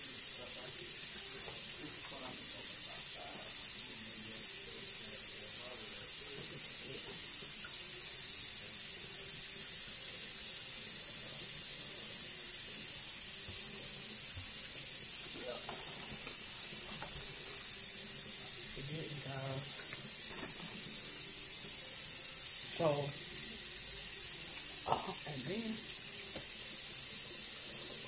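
Steady high-pitched hiss of the recording's background noise, with a few faint, low vocal sounds in the second half.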